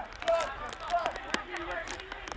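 Faint, distant shouts of players on a football pitch during play, with a couple of short knocks.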